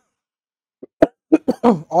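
About a second of silence, then a sharp mouth click and a quick run of short, clipped vocal sounds from a man as he starts speaking again.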